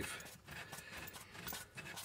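Remote brake balance bar adjuster knob being turned by hand, a faint, irregular rubbing with light ticks as the threaded balance bar moves in its sleeve.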